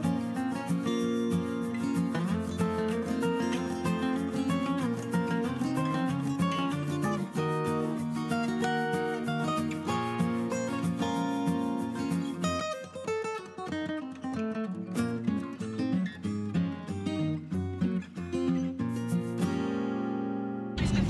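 Background music led by an acoustic guitar, with quicker plucked notes in the second half.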